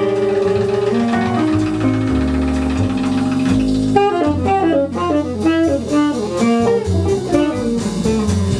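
Live jazz band with tenor saxophone, electric bass and drums. Long held notes over a steady bass line in the first half give way to a fast run of short notes from about halfway through.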